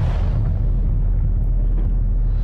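Broadcast graphic sting sound effect: a loud, steady deep rumble that holds without a break, sounding out the 'Free Bet Lands' animation.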